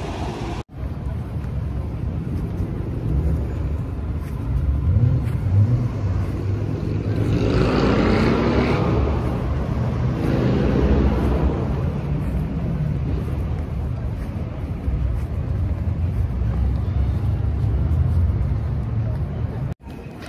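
Road traffic going by on a city street, a steady low rumble, with one vehicle passing close by about seven to twelve seconds in, its engine note rising and then falling away.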